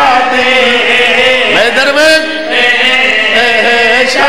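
A man's voice chanting in long, drawn-out melodic phrases of devotional recitation, loud through a microphone and PA, with a swooping note about one and a half seconds in.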